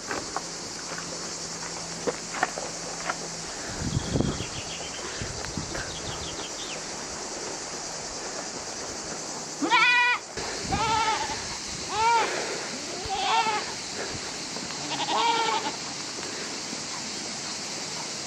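Miniature goats bleating, about five calls spread over several seconds in the second half, over a steady high hiss.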